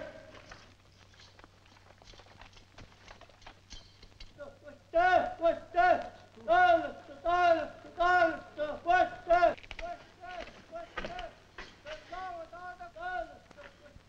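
Men's voices chanting in the distance: a short rising-and-falling call repeated about one and a half times a second, starting about four and a half seconds in and growing fainter after about nine and a half seconds, over faint scattered clicks.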